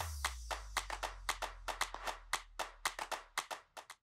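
Electronic outro sting: a deep bass tone that starts suddenly and fades away near the end, under a quick, irregular run of sharp clicks.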